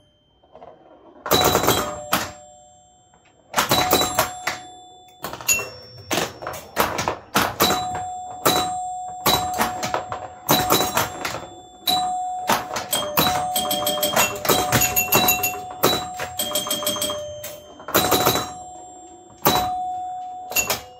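Bally Old Chicago electromechanical pinball machine in play: scoring chimes ringing over the clatter of score reels and relays and the thunks of flippers and bumpers. The bursts start after a quiet first second and come thick and fast from about halfway on.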